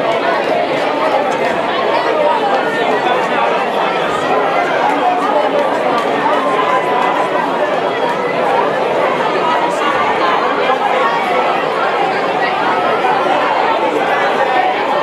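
Steady hubbub of many overlapping voices: a large audience chattering, with no single voice standing out.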